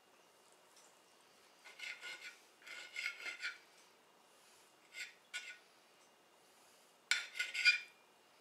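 Table knife sawing through a bacon-wrapped meatball held with a fork, the blade scraping against the plate in about five short bursts, loudest near the end.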